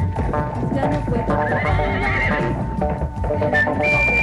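Vallenato music with no singing: an accordion holds a steady note and plays melodic runs over a continuous percussion beat.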